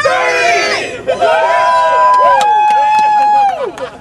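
Several young men yelling and cheering together, with two long drawn-out shouts held through the middle.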